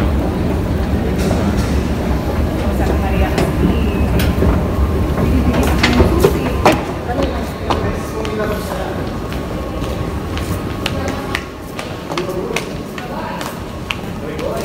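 Underground metro station noise: a heavy low rumble that drops away about six and a half seconds in, with sharp clicks scattered throughout and voices in the background.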